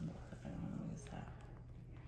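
A brief, low murmur from a person's voice about half a second in, over faint room hum.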